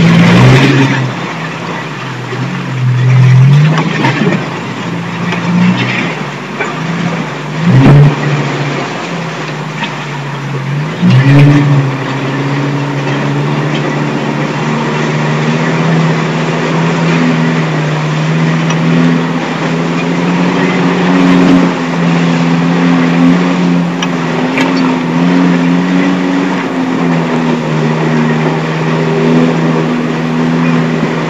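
Off-road vehicle engine running under load as it drives a rough, muddy track, heard from inside the cabin. Its note rises and falls with the throttle, with a few loud jolting thumps in the first ten seconds or so. After that it settles into a steadier pull.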